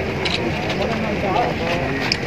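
Men's voices talking in a group, over a steady low rumble.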